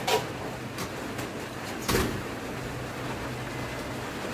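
Handling clicks and light knocks of metal parts as a steering damper and rubber O-ring are fitted to a scooter's steering bracket: a sharp click at the start, two faint ticks, and a louder knock about two seconds in, over a low steady hum.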